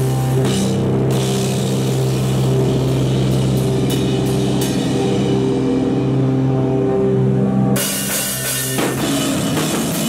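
Live rock band opening a song: amplified bass and instruments hold a steady droning note with a few scattered drum and cymbal hits. Then, nearly eight seconds in, the full kit comes in with crashing cymbals.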